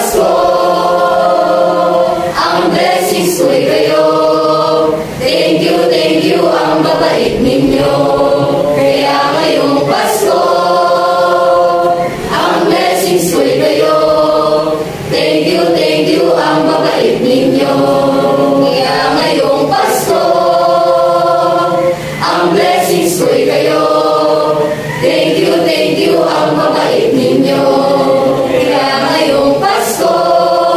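Mixed choir of teenage students, boys and girls, singing together in held phrases. Short pauses for breath come between phrases every two to three seconds.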